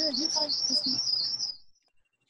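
A small bird chirping in a rapid run of high, wavering notes, heard over a Zoom call. It cuts off suddenly about one and a half seconds in.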